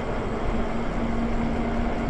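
Wind rushing over the microphone and tyre noise from a Lyric Graffiti electric bike riding along a paved street, with a faint steady hum underneath.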